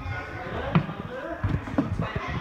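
A few dull thuds of a person's hands and feet striking a plywood parkour box and landing on the gym floor during a vault, with voices in the background.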